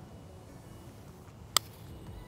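A TaylorMade P790 UDI 17-degree driving iron striking a golf ball on a short run-up chip: one sharp click about one and a half seconds in, over faint background hiss.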